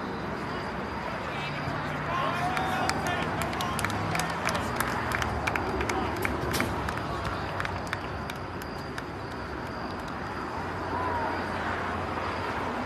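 Spectators in outdoor stands talking and calling out over general crowd noise, with a cluster of short, sharp sounds in the middle few seconds.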